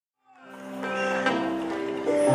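Keyboard music fading in from silence: sustained chords held steady, moving to a new chord a little past one second in.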